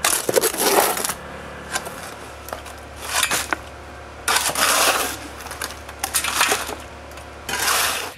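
Wet concrete being mixed and shovelled in a metal wheelbarrow with a long-handled tool, scraping across the pan in about six separate gritty strokes a second or so apart.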